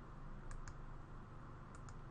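Computer mouse button clicked twice, each a quick pair of clicks, over a faint steady low hum.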